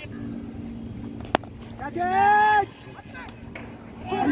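A cricket bat strikes the ball with a single sharp crack, followed about half a second later by a player's long shout. A faint steady low hum runs underneath.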